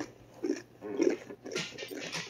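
A tortilla chip from the Paqui One Chip Challenge being chewed by mouth, with three short muffled mouth sounds about half a second apart.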